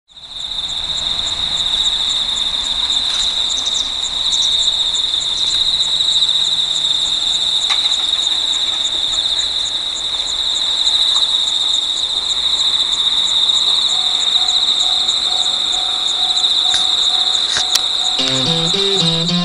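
Autumn insects singing in grass: one steady, high-pitched trill that runs unbroken.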